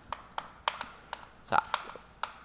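Chalk tapping on a blackboard while characters are written: a run of short, irregular clicks, with a slightly louder pair about three-quarters of the way through.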